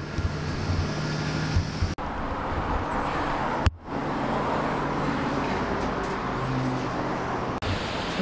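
Steady road traffic noise from passing cars, with some low rumbles of handling or footsteps early on, broken abruptly three times.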